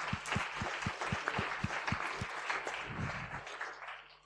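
An audience applauding, with a run of sharp, evenly spaced claps close to the microphone, about four a second, through the first half; the applause dies away near the end.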